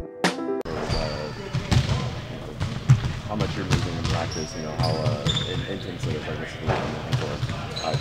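Basketballs bouncing on a gym floor, several irregular dribbles a second, with occasional short high squeaks and distant voices behind. A music sting cuts off just under a second in.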